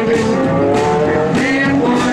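Live electric blues: slide guitar on a hollow-body electric, its notes gliding upward, over electric keyboard and a steady beat.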